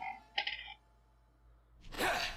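A short, bright metallic chime with several high ringing tones about half a second in, as the music ends, followed by near silence.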